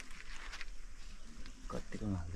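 Long leaves of a thatched shelter rustling as they are handled and tied onto the bamboo frame. Near the end a low, grunting voice begins.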